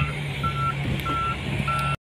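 A vehicle's reversing alarm beeping at a steady rate, a single high tone about every 0.6 s, over the low steady hum of an engine running.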